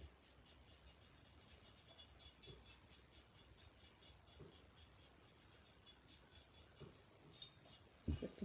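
Faint, rapid, even scratching of a paintbrush dry-brushing white paint onto a ceramic turkey lantern, stroke after stroke.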